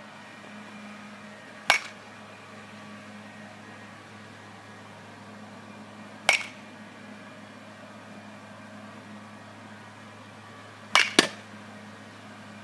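Baseball bat striking pitched balls in a batting cage: three sharp hits spaced a few seconds apart, each with a short ringing tail, with two cracks in quick succession near the end. A faint steady hum sits underneath.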